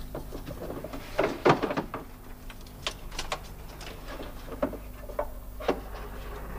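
Irregular light knocks and clinks of objects being handled and set down, loudest in a cluster about a second and a half in, over a low steady hum.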